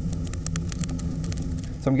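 Wood-fired rocket stove burning hot with its added secondary air pipes open: a steady low drone of the draft through the burn chamber, with many quick crackles from the burning kindling.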